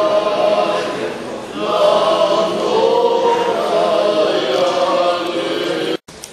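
Several voices singing an unaccompanied Orthodox liturgical chant in long held notes, with a short break about a second and a half in; the singing cuts off suddenly at the end.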